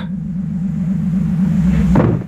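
Low, steady rumbling hum of a sci-fi spaceship sound effect, with a slight even pulse.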